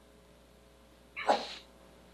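A single short, sharp burst of breath noise from a person, about a second in.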